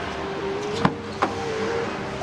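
The rear side door of a Daihatsu Sigra being opened: its latch gives a sharp click a little under a second in, then a softer click as the door swings free.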